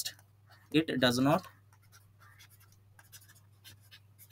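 Stylus writing on a digital pen tablet: a run of faint, short scratching strokes as words are handwritten, with a brief bit of a man's speech about a second in.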